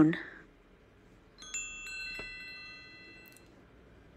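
A short chime sound effect: several bell-like tones come in one after another about a second and a half in and ring for about two seconds. It is the cue for the learner's turn to speak.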